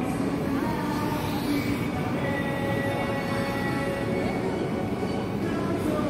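Steady background hubbub of a busy indoor public space, with faint music-like held tones drifting through it.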